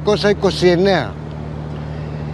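A steady low engine hum that runs under a man's speech and carries on alone through the second half, with no change in pitch.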